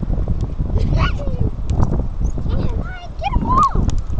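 A small shark knocking against a wooden pier rail as it is swung onto it, over a steady low rumble on the microphone. Short vocal exclamations rise in pitch about a second in and again near the end.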